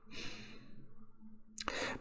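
A man's faint breathy sigh out, fading over the first second or so, then a sharper breath in near the end.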